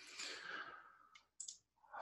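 A soft breathy exhale close to the microphone, falling in pitch over about a second, followed by two quick computer mouse clicks.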